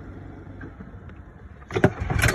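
Golf cart rolling with a low, steady rumble, then a sudden clatter of loud knocks near the end.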